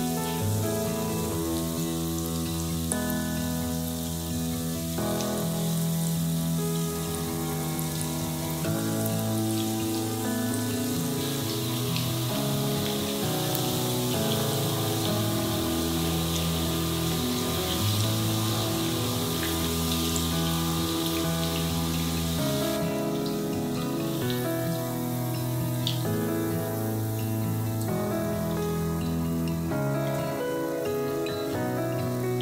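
Hot oil sizzling steadily around carrot, oat and chicken croquettes frying in a pan, under background music with sustained chords that change every couple of seconds.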